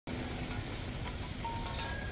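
Steady sizzling hiss of a hot charcoal grill, a sound effect, with a few faint held tones over it near the end.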